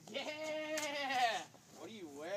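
A person's voice making one drawn-out, quavering, bleat-like cry lasting about a second and a half, falling in pitch as it ends.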